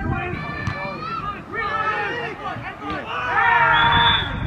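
Men's voices calling out across a football pitch during play, with several overlapping. Near the end comes a louder, higher-pitched shout.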